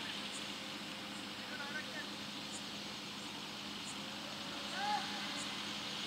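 Two short shouted calls from players out on a cricket field, one about a second and a half in and a louder one near five seconds, over a steady background hiss.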